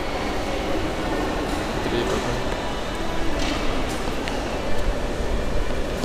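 Shopping-mall hubbub: indistinct background voices over a steady low rumble.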